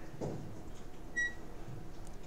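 Low steady room hum with one short, high electronic beep about a second in, and a faint brief voice sound shortly before it.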